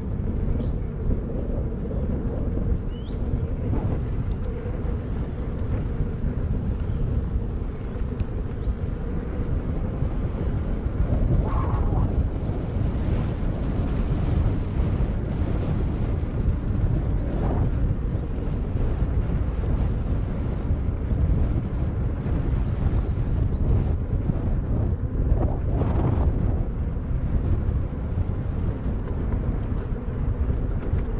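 Steady wind noise on the microphone of an electric unicycle riding a dirt track at about 20–27 km/h, with a low rumble from rolling over the ground.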